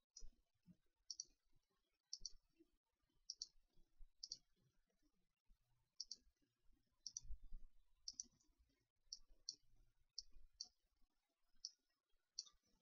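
Computer mouse button clicking faintly, roughly once a second at uneven intervals, each click a quick double tick of press and release. A soft low rumble comes about seven seconds in.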